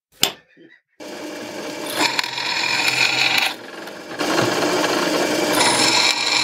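A single hammer blow on a centre punch against a mild steel plate, then, about a second in, a drill press running a small twist drill into the steel. The cutting noise comes in two louder, higher stretches with a dip between.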